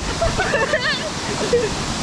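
Steady rushing of a waterfall plunging into a pool, with men's voices over it.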